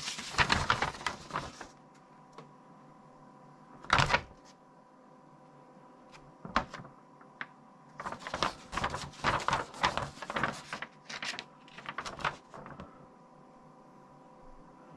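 A paper instruction sheet rustling and crackling as it is unfolded and handled, in several spells: the first second and a half, briefly about four seconds in, and a longer spell in the second half. A faint steady hum runs underneath.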